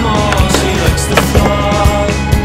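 Skateboard on a metal handrail: wheels and trucks on the rail, with one sharp board impact a little after a second in, heard over a music soundtrack.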